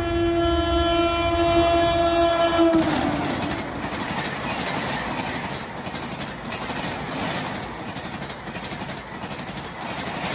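Horn of a WAP7 electric locomotive sounding one long steady blast that stops about three seconds in, followed by the rush and rhythmic clatter of passenger coaches passing at speed.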